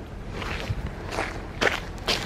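Footsteps splashing through a shallow muddy puddle, three steps about half a second apart.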